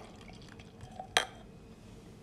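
A single sharp glass clink about a second in, a glass or bottle knocked or set down, against a quiet room.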